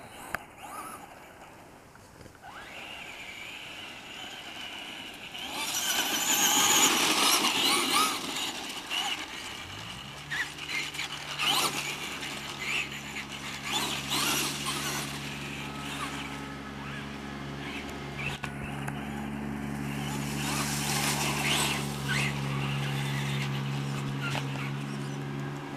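Radio-controlled monster truck driving over a dirt yard, with loud surges of motor and tyre noise as it speeds about. About ten seconds in, a steady low engine hum starts up and keeps going underneath.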